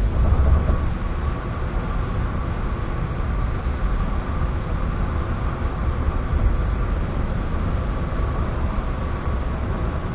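Steady low rumble of road and engine noise inside a moving car's cabin, picked up by a phone's microphone.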